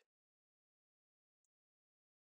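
Near silence: digital silence between stretches of speech.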